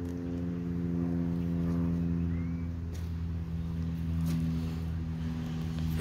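Steady low mechanical hum holding one pitch, like an idling engine, with a few faint clicks about three and four seconds in.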